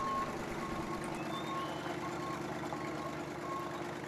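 Yard tractor engine running steadily while backing a trailer, its reversing alarm giving repeated short beeps.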